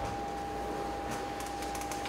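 Quiet room tone in a small room: a steady low hum with one thin steady tone over it, and a few faint ticks in the second half.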